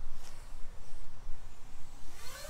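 Outdoor ambience dominated by an uneven low rumble of wind on the microphone, with a faint high wavering whistle a little before the middle.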